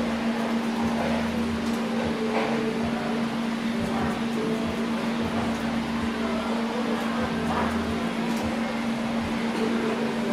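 Steady, constant-pitch hum, with a few faint snips of hair-cutting scissors over it.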